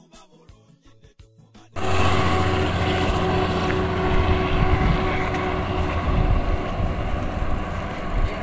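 Faint music cuts off abruptly about two seconds in. A loud, steady drone follows: a car engine idling close by, with a strong low hum and wind buffeting the microphone.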